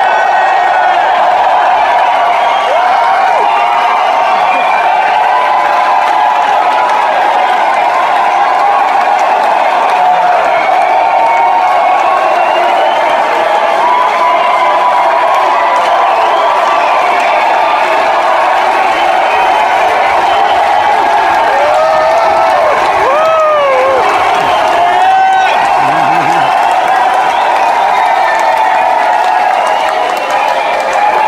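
Large concert audience cheering and shouting continuously and loudly, with a few drawn-out whoops about three quarters of the way through.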